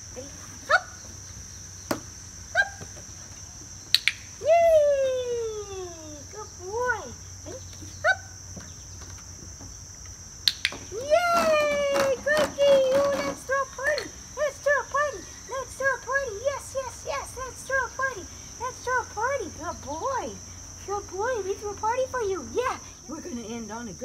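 Insects trill steadily throughout, with several sharp clicks from a dog-training clicker in the first half. A high voice gives one long falling call about four seconds in, then many short pitched calls in quick succession through most of the second half.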